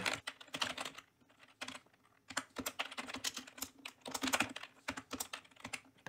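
Typing on a computer keyboard: runs of quick key presses, with a pause of about a second near the start.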